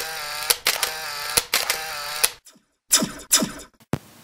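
Edited-in transition sound effects: a noisy mechanical sound with a wavering tone and sharp clicks about once a second for two and a half seconds, then two short falling swooshes and one sharp click near the end.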